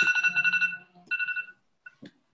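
An electronic ringing tone sounds twice, a longer ring and then a shorter one, like a phone ringtone or a call chime.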